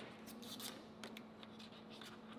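Faint crinkling and rustling of an MRE foil dessert pouch being handled and opened, a scatter of soft crackles.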